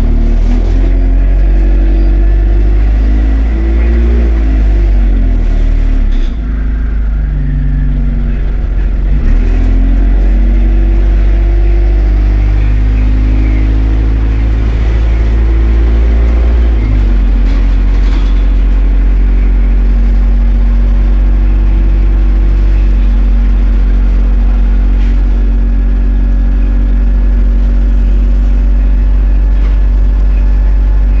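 Single-deck bus engine and drivetrain heard from inside the passenger saloon, a loud low drone that rises and drops in pitch several times over the first 17 seconds as the bus gets under way, then holds a steady note.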